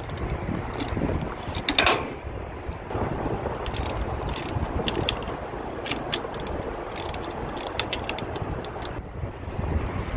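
Hand socket ratchet clicking in short runs of quick strokes as a fender-bracket bolt is turned, a bolt that is hard to loosen. Wind rumbles on the microphone underneath.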